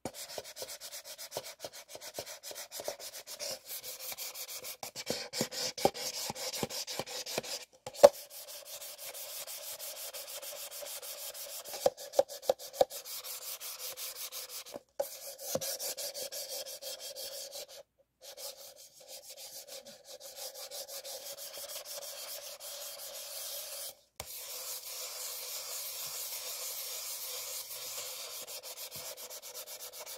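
White paper cups rubbed and scraped against each other in quick back-and-forth strokes, a dry scratchy rubbing broken by a few short pauses. A few sharper taps stand out, the loudest about eight seconds in and several more around twelve to thirteen seconds.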